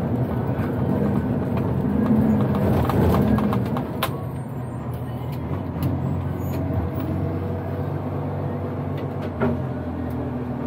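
Iveco Acco garbage truck's diesel engine running, heard from inside the cab as it drives. The engine note drops back about four seconds in, with a sharp click at that point and another near the end.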